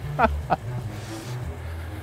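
A short laugh at the start, then an SUV's engine idling with a steady low hum.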